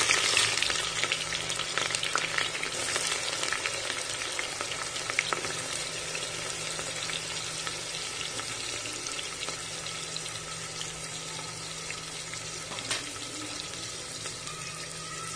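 Sliced onions deep-frying in hot oil: a steady sizzle and crackle with scattered small pops, gradually getting quieter over the seconds after they are added.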